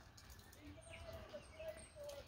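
Faint bird calls: a run of short, low notes that begins a little way in and carries on, with a few fainter high chirps.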